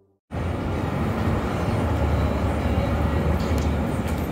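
Steady outdoor background noise with a heavy low rumble, starting abruptly a moment in.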